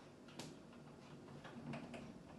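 A single sharp click about half a second in, then low room tone with a few faint ticks, as a hand handles something inside an empty fridge.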